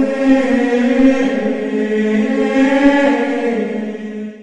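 Sacred choral chant: voices holding one long sung 'oh' with small steps in pitch, beginning to fade near the end.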